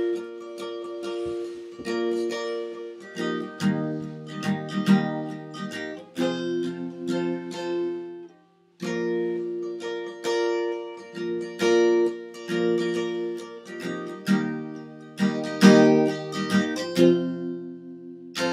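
Acoustic guitar strummed in chords, in short phrases with brief pauses and a full stop about eight seconds in before the strumming picks up again.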